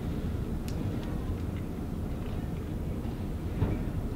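Steady low rumble of background room noise, with a faint click near the start and a short knock near the end.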